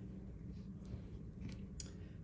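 Faint handling of small plastic nail-art pieces, with a few light clicks, the sharpest near the end.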